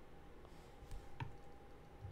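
A few computer mouse clicks, sharpest about a second in, over a faint steady hum.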